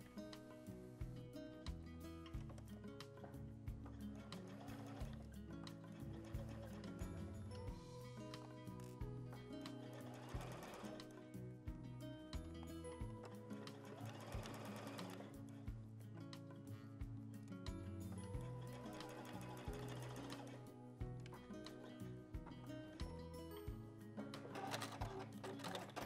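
Domestic sewing machine sewing a straight stitch through jersey, running in several short spells with pauses between, under steady background music.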